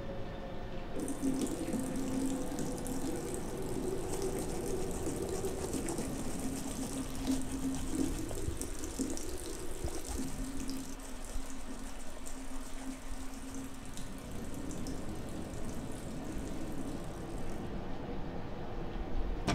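Bathroom sink tap running steadily into the basin, turned on about a second in and shut off near the end, with a low steady hum beneath it.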